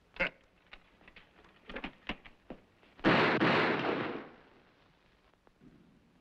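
A few knocks and clicks of muskets being handled. About three seconds in comes a loud burst of noise with a sharp start, dying away over about a second and a half.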